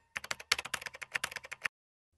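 Typing on a computer keyboard: a quick run of key clicks that stops shortly before the end.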